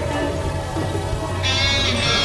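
Free-jazz group improvising, with an electric guitar in a dense mix of sustained notes. A high, wavering tone enters about one and a half seconds in.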